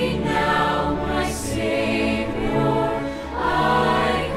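Mixed choir and string orchestra performing a hymn: sustained massed voices over bowed strings.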